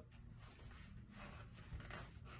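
Near silence: faint room tone in a small room.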